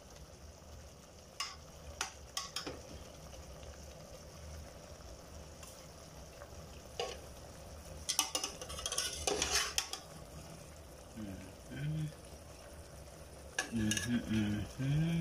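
Metal spoon clinking and scraping against an aluminium pressure-cooker pot as chicken pieces are stirred, over a faint steady sizzle. The scattered knocks give way to a burst of scraping about eight seconds in.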